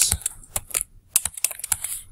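Typing on a computer keyboard: a quick run of about a dozen keystrokes, with a brief pause about a second in.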